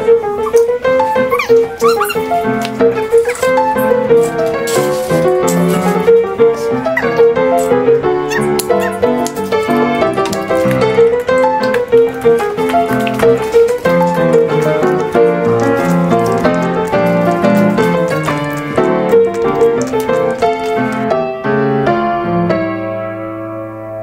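Background piano music: a continuous, busy run of notes over a wavering melody line.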